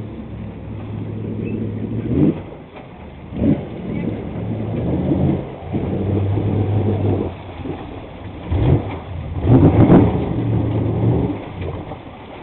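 Small personal-watercraft engine running at low speed with a steady hum. Its note rises and falls, and a few short, louder rushes break in, about two seconds in, at three and a half seconds, and twice near the end.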